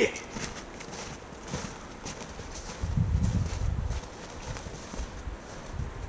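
Footsteps crunching through snow as two people walk off, with a low rumble for about a second midway.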